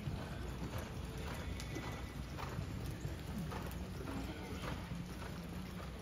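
Hoofbeats of several horses running on soft arena dirt: a continuous rumble of irregular, overlapping thuds.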